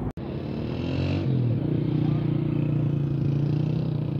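A vehicle engine running steadily; its pitch steps up slightly about a second in, then holds.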